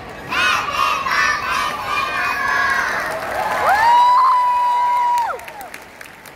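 A group of young children shouting and cheering together, ending in one long shout held in unison for about a second and a half.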